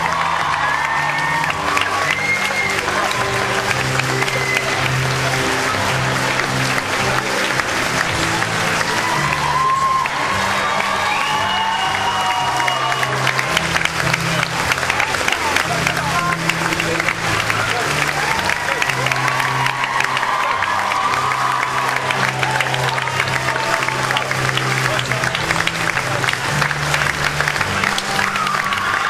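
Audience and cast applauding steadily over instrumental curtain-call music that moves through held chords.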